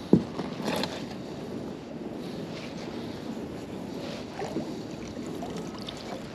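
Steady wind and water noise around a small boat. There is one sharp knock just after the start, and a few soft rustles as a wet magnet-fishing rope is pulled in by gloved hands.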